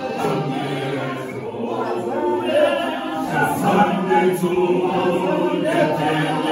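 Unaccompanied male choir singing together in close harmony, in the Zulu isicathamiya style.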